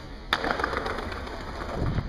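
Skateboard landing on stone paving after a stair jump: one sharp clack about a third of a second in, then the wheels rolling over the tiles.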